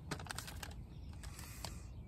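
A quick run of light clicks and taps, then a few more spaced clicks, over a low steady hum.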